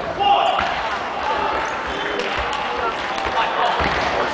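Table tennis ball clicking sharply off bats and table in a rally, several hits, over the background chatter of voices in a sports hall.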